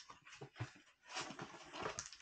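Cardboard mailer being handled: short, irregular scraping and rustling as a flat cardboard-backed item is slid out of the box.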